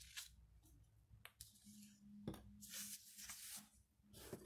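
Faint rustling of a paper card being handled, with a couple of light clicks.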